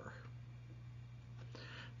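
Quiet room tone from a voice microphone: a steady low electrical hum with faint hiss, and a soft breath about a second and a half in, just before speech resumes.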